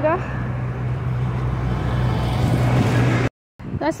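Street traffic: a steady low engine hum with a rushing noise that swells in the middle as a motor vehicle passes. The sound cuts out briefly near the end.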